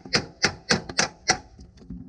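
Hammer striking the nut on the lower ball joint stud of a Honda Rincon ATV's front steering knuckle, five sharp metal-on-metal taps about three a second that stop a little past halfway. The taps are driving the ball joint loose from the knuckle without a ball joint separator tool.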